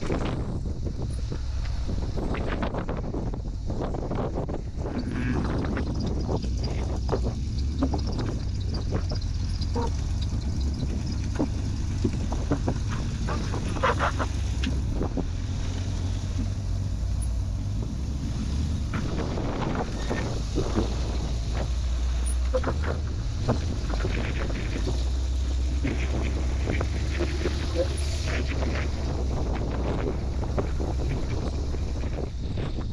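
Off-road rock-crawling buggy's engine running as it climbs a steep slickrock ledge, with scattered sharp knocks throughout. A steady low rumble of wind on the microphone lies under it all.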